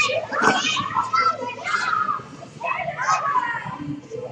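A group of children shouting and calling out over each other while they play an active game in a school gym.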